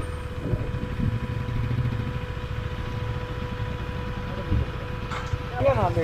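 Single-cylinder motorcycle engine running at low speed, a steady low pulsing rumble.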